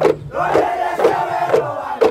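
A group of dancers chanting and calling out together over a steady drum beat, about two beats a second.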